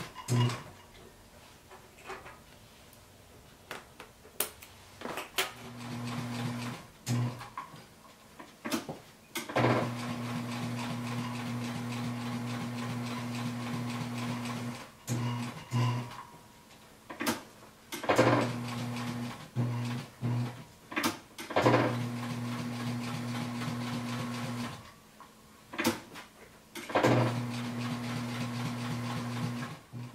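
Post-bed leather sewing machine stitching leather in several runs of one to five seconds, its motor humming steadily while it sews, with sharp clicks as it starts and stops between runs.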